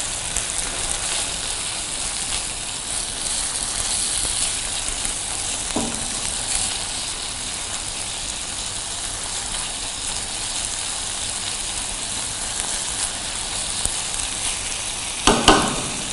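Sliced onions and green chilies frying steadily in oil and butter in a nonstick pan, stirred with a silicone spatula. A couple of brief knocks near the end.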